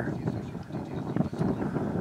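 Low, uneven wind noise on the microphone outdoors.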